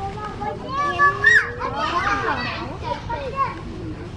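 Several children's voices talking and calling out over one another, loudest about a second in.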